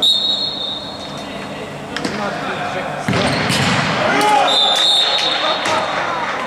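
Referee's whistle blown twice in a large sports hall: a blast of about a second at the start and a longer one near the end. A ball thuds on the hard court floor in between.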